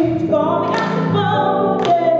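A woman singing live into a microphone over musical accompaniment, holding notes with a slight waver, with a sharp accent in the music about once a second.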